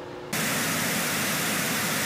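Steady TV-static hiss from a glitch transition effect. It cuts in suddenly just after the start and holds at one level.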